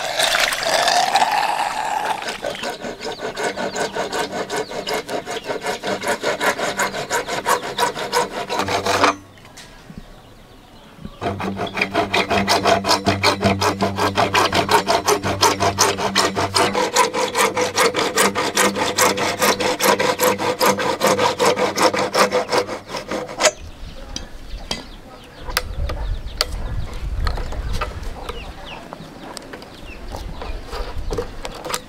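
Hacksaw cutting through a large PVC pipe in rapid, even strokes, with a short pause about nine seconds in. The sawing stops about 23 seconds in, leaving quieter handling of the cut plastic with a few sharp clicks. It opens with a couple of seconds of water splashing as fish slide out of a pipe into a basin.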